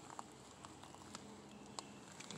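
Near silence: faint outdoor background with a few small, quiet ticks.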